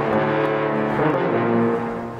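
Concert band playing, led by two trombones holding long, sustained brass chords; the notes change about a second in.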